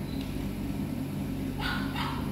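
Recorded dog sound played through the LEGO EV3 brick's small speaker, with a short noisy burst near the end, over a steady low hum.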